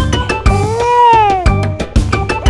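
An animated baby's cry, one long wail that rises and then falls in pitch, over upbeat children's-song backing music with a steady beat.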